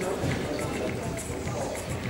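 Echoing sports-hall background of voices and faint music, with soft footfalls of a karate competitor moving on the wooden floor between kiai shouts.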